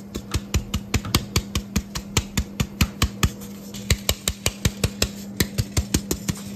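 Metal flour sieve knocked by hand to sift flour into a glass bowl: quick, even taps, about five a second, with a short pause just past the middle. A steady low hum runs underneath.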